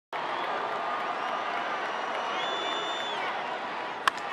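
Steady ballpark crowd noise: a full stadium of fans making a constant din as a pitch is about to be thrown.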